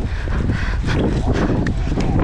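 Wind buffeting a GoPro's microphone on a galloping horse, with the thud of its hooves on turf underneath.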